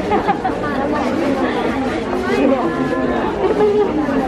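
People talking, with voices overlapping in chatter.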